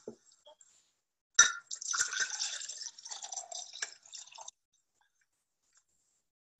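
Juice being poured from a short glass into a tall, narrow glass, a liquid splashing and trickling sound that begins with a knock about a second and a half in and cuts off abruptly after about three seconds.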